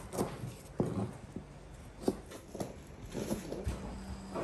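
Knife slicing red onion on a cutting board: separate sharp knocks of the blade on the board, at irregular intervals of about half a second to a second.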